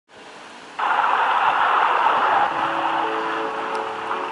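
A Tecsun portable radio tuned to medium wave 1008 kHz, giving a loud, even hiss of AM reception static that comes in suddenly about a second in. From about halfway, a few steady musical notes of the station's jingle rise faintly under the static.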